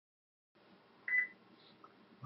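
A single short, high electronic beep about a second in, from the computer as webcam recording starts, over faint room hiss.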